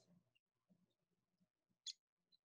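Faint recording of a downy woodpecker, mostly quiet, with one short, sharp pik note near the end.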